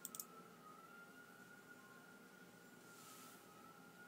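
A few faint clicks right at the start, from the flashlight's rotating head being turned, then near silence with a faint steady high tone.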